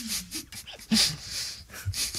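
Stifled laughter from a person holding a mouthful of water: short snorting breaths through the nose and brief muffled laughs in quick puffs.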